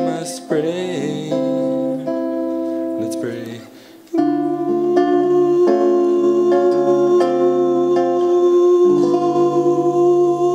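Acoustic guitar strummed with a man singing. The sound drops away briefly just before four seconds in, then comes back with steady strumming under one long held vocal note.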